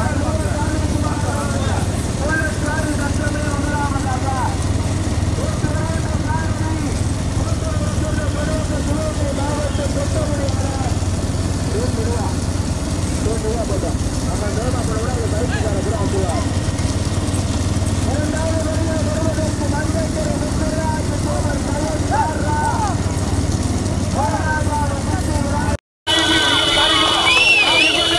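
Men shouting and calling over a steady low drone of motorcycle engines running alongside racing bullock carts.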